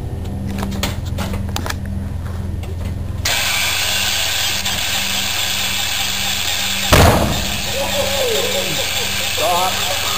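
Pratt & Whitney R-985 Wasp Jr. nine-cylinder radial engine cranking over on its starter and turning the propeller, growing louder and rougher about three seconds in. About seven seconds in comes one sharp, loud backfire bang: the magneto timing was set with top dead centre on the wrong stroke, not the compression stroke. A voice exclaims just after the bang.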